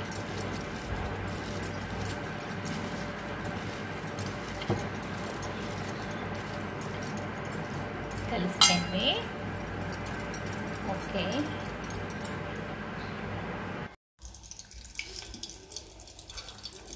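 A hand squelching and mixing wet, marinated chicken pieces in a steel bowl, with small clinks of glass bangles against each other and against the bowl, over a steady background hiss. Near the end the sound cuts off suddenly, and a quieter stretch follows.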